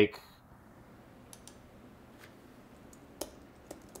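Faint, scattered clicks from a computer keyboard and mouse, about five single clicks over a few seconds, against quiet room tone.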